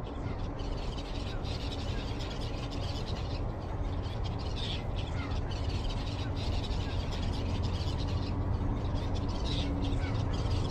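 A steady low mechanical hum with dense rattling over it, and birds calling now and then.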